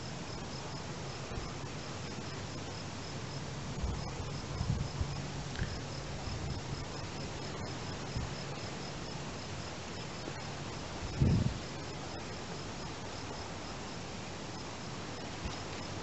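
Crickets chirping steadily, about four high chirps a second with brief pauses, over a faint low hum. A single low thump stands out about eleven seconds in.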